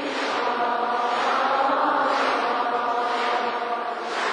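Buddhist liturgical chanting by many voices in unison, drawn out in long held notes.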